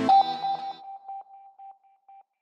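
Electronic music cuts off just after the start, leaving a single steady electronic tone that pulses on and off and fades away, like the echo tail of a logo sound effect.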